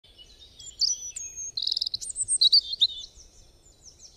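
Birdsong: a string of high chirps, whistles and a quick trill, loudest in the middle and fading away near the end.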